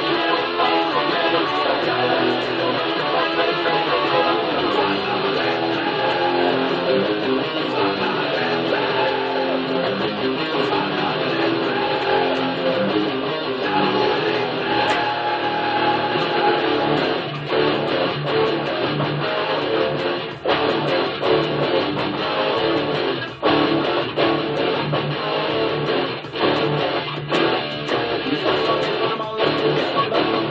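Electric guitar playing a rock riff, along with a recorded band track that has bass in it, with brief breaks about 20 and 23 seconds in.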